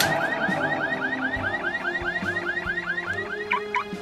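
A car alarm whooping in fast, repeated rising sweeps, about six a second, that stop about three and a half seconds in, over a low sustained music drone.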